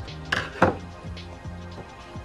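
A screwdriver set down on a hard worktop: a short clatter of two quick knocks less than a second in, over steady background music.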